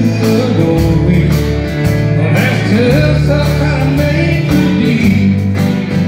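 Live country band playing: a strummed acoustic guitar over bass guitar with a steady beat, and a melodic line that wavers in pitch, likely a man singing.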